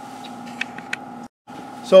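A steady electrical hum of a few fixed tones, with a few faint ticks. The sound cuts out completely for a moment just past the middle, then the hum returns and a man starts speaking at the end.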